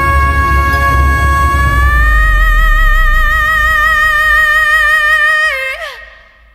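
Female singer holding one long, high belted note, steady at first, then lifting slightly about two seconds in and taking on a vibrato before dropping off near the end. Low band accompaniment under it fades away after the first two seconds.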